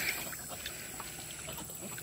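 Faint, steady background hiss with a few soft clicks; no clear source stands out.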